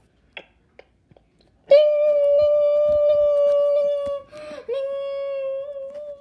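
A voice holding a long, steady high note, then a quick breath and a second long note at nearly the same pitch that wavers slightly as it ends.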